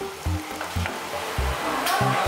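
Spicy chicken stir fry (dak galbi) sizzling in a shallow pan on a tabletop burner while a wooden spatula stirs it, as cheese is mixed in.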